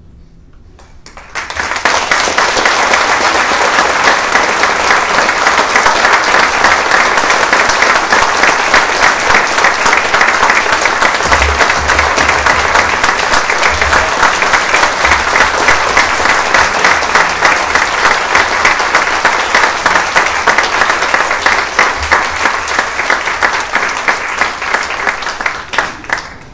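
Concert audience applauding: loud, steady clapping that breaks out about a second and a half in, after the orchestra's final note dies away, and cuts off suddenly near the end.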